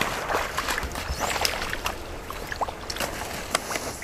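Legs wading through shallow pond water and mud, sloshing steadily, with scattered small clicks and crackles.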